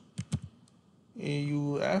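Computer keyboard typing: a few quick keystrokes in the first half second. They are followed by a drawn-out spoken syllable in the second half.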